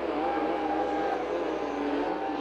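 Racing snowmobile engines running steadily as the sleds circle the ice oval at low speed, a continuous drone that wavers slightly in pitch.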